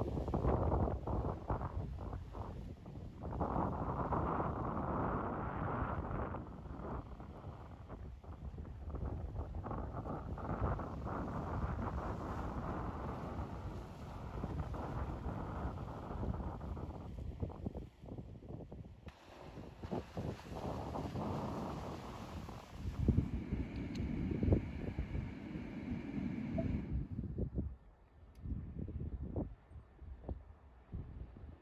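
Gusty wind buffeting the microphone over sea waves washing onto a rocky shore. The rush swells and fades in gusts and drops off near the end.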